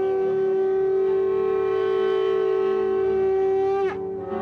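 One long, steady note blown on a wind instrument, held at one pitch with a full, horn-like tone, then sliding down in pitch as it dies away near the end.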